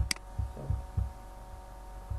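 A single sharp mouse click, followed by several soft, dull low thumps, over a steady electrical hum.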